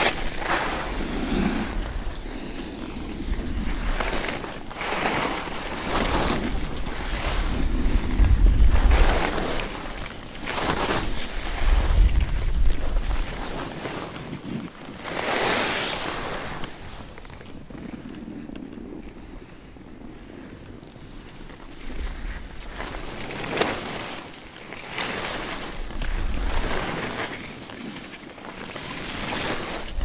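Skis scraping over chopped-up piste snow in swells that come and go turn by turn, with gusts of wind buffeting the microphone. The scraping eases off for a few seconds past the middle, then picks up again.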